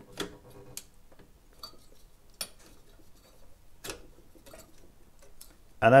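Scattered light clicks and taps as a fan is pushed onto a Cooler Master Hyper 212 EVO tower heatsink and settled into its mount, about half a dozen separate knocks in all.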